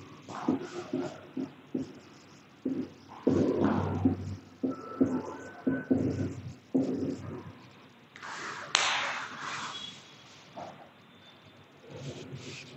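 Felt-tip marker writing on a whiteboard: short taps and strokes with faint squeaks as the letters are drawn, under faint low murmuring. About nine seconds in, a louder rustle with a sharp click, the sound of a clip-on microphone being handled.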